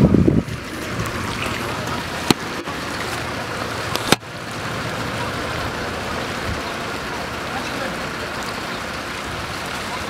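Steady rushing of floodwater running through a street, broken by two sharp clicks about two and four seconds in.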